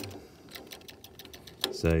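Small scattered clicks and rattles of batteries being pressed into the plastic battery compartment of a smart thermostatic radiator valve, with one sharper click near the end.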